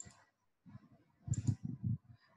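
Computer mouse clicking: a sharp click at the start and two quick clicks about a second and a half in, with soft low thumps around them.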